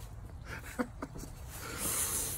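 A man's quiet, breathy laughter between sentences, ending in a hissing breath out near the end.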